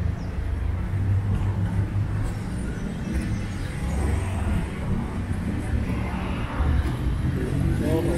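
Street ambience: a steady low rumble of road traffic from cars on the adjacent street.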